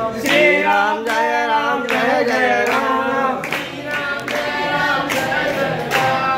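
A group of people singing together, keeping time with rhythmic hand clapping.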